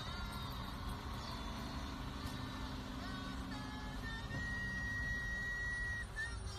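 Low steady rumble inside a car's cabin, stopped in a traffic jam, with music playing; a high held note comes in about four seconds in.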